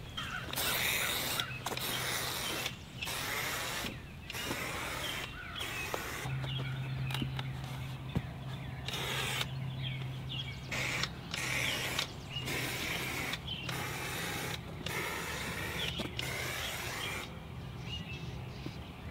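Aerosol marking paint hissing from an inverted can on a marking wand, in repeated bursts of about a second each with short gaps between them, as a line is sprayed out. A steady low hum joins in for a few seconds mid-way.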